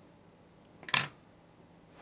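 A single snip of fly-tying scissors about a second in, cutting the legs of a small jig-head fly shorter; otherwise faint room tone.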